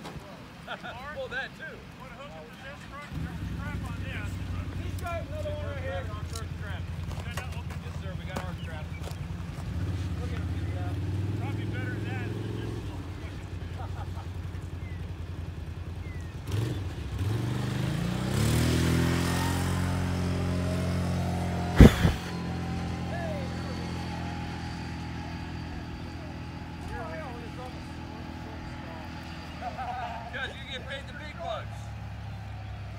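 Truck engine starting to run steadily a few seconds in, then revving up under load as it pulls on a tow strap, with a single sharp bang shortly after the revving peaks. The engine keeps running to the end.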